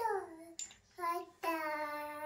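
A young child's voice: a falling vocal sound, a short syllable about a second in, then one long, steady sung note.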